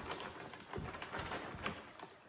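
A glossy gift bag rustling and crinkling in irregular crackles as a baby moves about with it over his head.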